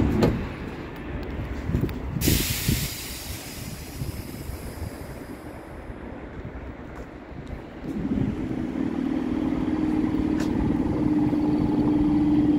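Standing LEW MXA suburban electric train: a short burst of compressed air hissing out about two seconds in, then from about eight seconds a steady hum starts up and holds.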